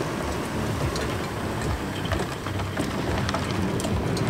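2021 Toyota 4Runner Trail Edition driving past on dry dirt. Its tyres crackle steadily over the soil and debris, with a low engine rumble underneath from its 4.0-litre V6.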